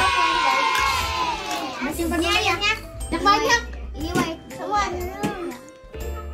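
Children's voices chattering over background music; a held musical passage fades out in the first two seconds, leaving the children's voices.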